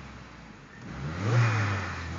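Volvo 740 turbo's turbocharged four-cylinder engine idling, then blipped: the revs rise sharply about a second in and drop back, and a second blip starts near the end.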